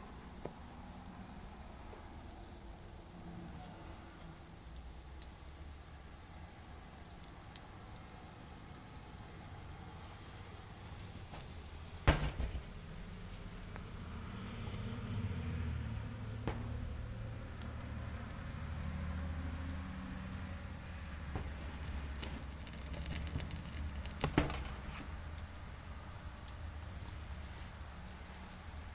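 A small TLUD wood-gas stove's pine coals burning under a pot of heating water: a faint steady hiss with a few sharp clicks or pops, the loudest about twelve seconds in. A low rumble rises through the middle stretch.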